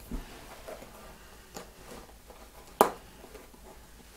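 Quiet handling of a soft rubber RC crawler tyre and its aluminium wheel parts, with light rustles and ticks and one sharp click a little under three seconds in.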